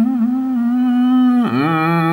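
A man's voice chanting Northern Thai khao joi verse, holding one long drawn-out note with slight wavers. About one and a half seconds in, it drops lower as the next phrase begins.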